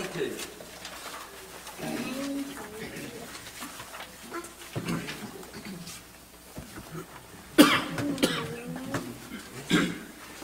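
Low, scattered voices murmuring in a small hall, with a sharp cough about three-quarters of the way through, the loudest sound, and a shorter one near the end.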